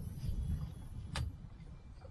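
Wind buffeting the microphone, an uneven low rumble, with one sharp click a little over a second in.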